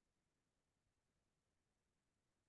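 Near silence, only a faint even hiss.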